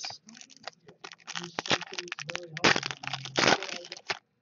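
Foil wrapper of a trading card pack crinkling and tearing as it is opened by hand: a dense run of sharp crackles, loudest about three seconds in.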